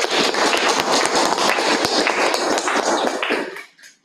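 A small group of people applauding, a dense patter of hand claps that fades out shortly before the end.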